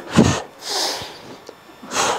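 A man's forceful breath through the mouth as he closes a cable-crossover fly rep: a short breath just after the start, then a hissing exhale lasting about half a second, and another short breath near the end.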